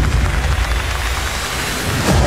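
Edited transition sound effect: a loud rushing noise over a deep, heavy rumble, easing off slightly before a louder hit right at the end.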